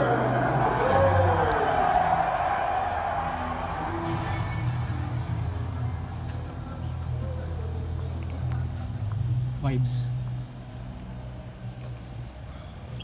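A pre-recorded matchday walk-out track played over the stadium's public address: a voice and music echo over a steady low rumble.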